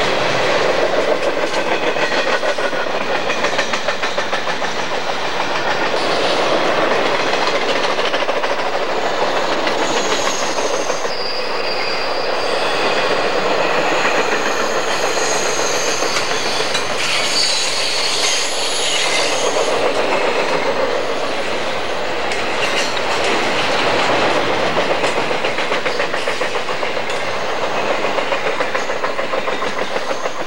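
Cars of a long intermodal freight train rolling past: a steady rumble and clatter of steel wheels over the rail joints. In the middle, high thin wheel squeal from the flanges rubbing on the curve.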